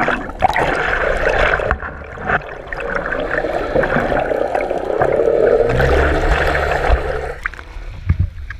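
Sea water rushing and gurgling around a submerged GoPro housing as it moves through the water, with a low hum for about two seconds near the end. The rushing drops away about seven seconds in.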